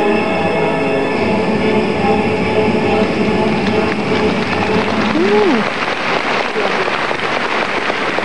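Floor-exercise music holding sustained chords that fade out over the first two seconds or so. It gives way to audience applause that builds after about four seconds, with a brief rising-and-falling whoop from the crowd about five seconds in.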